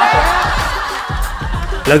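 A group of people laughing over background music with a steady beat; a voice starts speaking right at the end.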